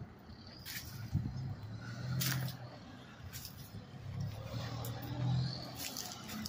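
Faint road traffic: a low rumble that swells and fades twice as vehicles pass, with a few light clicks.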